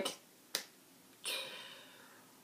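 A single sharp click about half a second in, then a soft breathy rush of noise that fades away over about a second.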